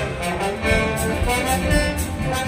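Symphony orchestra playing, with many instruments sounding together over a pulsing bass.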